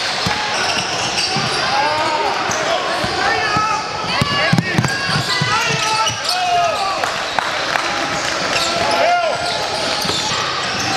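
Basketball game sound in a gym: a ball bouncing on the hardwood floor and sneakers squeaking, over the background chatter of players and spectators. A run of ball bounces comes around the middle.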